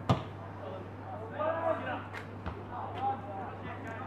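A football kicked once at the start, a sharp thud, followed by distant unclear shouts from players and onlookers over a steady low hum.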